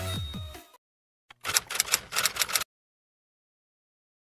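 Electronic intro music fades out in the first second; after a short pause comes a single click, then about a second of rapid sharp clicks, the sound effect of an animated subscribe-button graphic, followed by silence.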